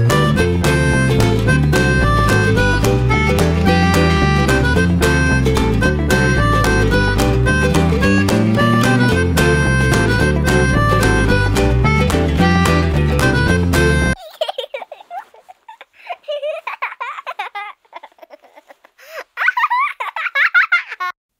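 Background music with a steady beat that cuts off suddenly about two-thirds of the way through, leaving a few brief, thin sounds in the last few seconds.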